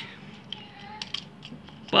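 Faint handling noise of a plastic double light switch with its wires attached, a few light, scattered clicks as it is turned in the hands.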